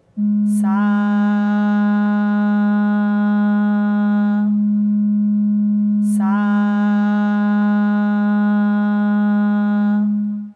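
Shruti box drone on G sharp, a single steady pure tone. Over it a woman sings the swara "Sa" twice, each note held steady for about four seconds, matching the drone's pitch.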